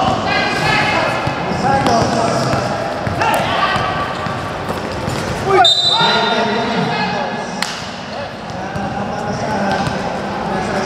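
Basketball game in a large hall: balls bouncing on the hard court and players' voices, with a short, sharp referee's whistle a little past midway.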